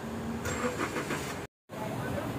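Street noise with a car engine running, a low steady hum that stops about a third of the way in. The sound drops out completely for a split second near the end.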